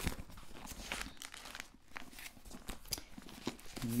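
Thin Bible pages rustling as they are leafed through, a run of short, soft crinkles and flicks.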